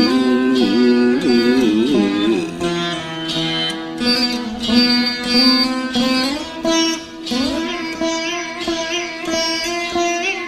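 Carnatic veena playing, plucked notes ornamented with wavering bends and slides, the pitch gliding upward about six and seven seconds in.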